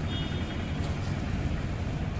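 Steady outdoor street background noise, a low rumble like passing traffic, with no distinct events.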